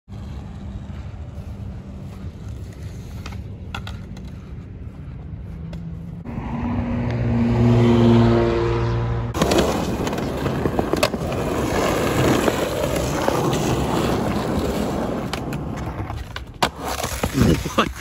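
Skateboard wheels rolling over a concrete skatepark bowl, a steady rumble with sharp clacks of the board and trucks striking the concrete, and a burst of clattering knocks near the end as the board comes loose.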